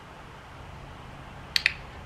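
A dog-training clicker clicked once, a sharp double click of press and release, about one and a half seconds in. It marks the puppy holding his stand on the platform, just before the reward.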